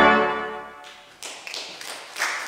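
A pipe organ's closing chord cuts off and dies away in the church's reverberation. About a second later scattered clapping begins.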